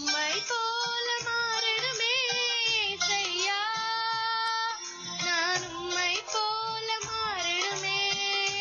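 A young girl singing a melody with long held notes and a wavering vibrato over an instrumental backing with a steady beat.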